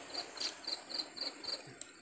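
A cricket chirping steadily in a fast, even series of short high chirps, about four a second.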